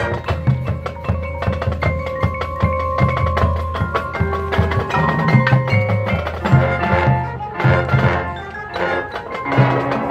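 High school marching band playing: a percussion-heavy passage of sharp drum and mallet strikes over sustained low notes. It drops briefly quieter around eight seconds in.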